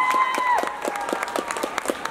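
Audience applauding, dense clapping throughout, with a long high-pitched shout held over it that ends about half a second in.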